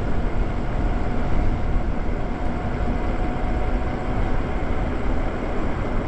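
Wind rushing over the microphone of an electric bike ridden at speed: a steady, heavy rumble with no let-up. A faint steady whine sits under it through the first half.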